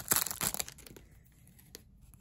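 Brief crinkling of a foil trading-card pack wrapper as the stack of cards is slid out of it.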